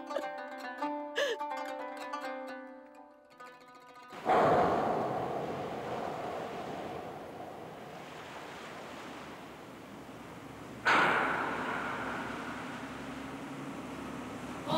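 Soft plucked-string music fades out over the first few seconds. Then sea waves wash onto the shore twice: the first comes in suddenly about four seconds in and slowly dies away, and the second comes in near the end.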